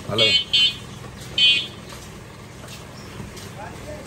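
A high-pitched horn tooting three short times in the first two seconds, the third a little longer, with a man's voice briefly at the start.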